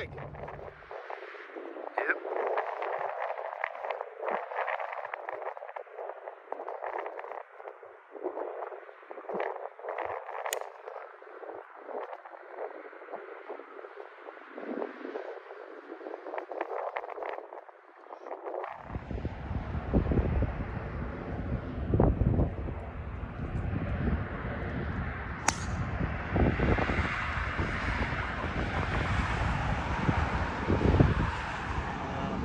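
Wind blowing across a phone microphone outdoors, light and thin at first, then turning into heavy low rumbling buffeting about two-thirds of the way through.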